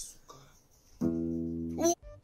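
Music from an acoustic guitar: a low note held steady from about halfway through, ending in a quick upward slide just before the end.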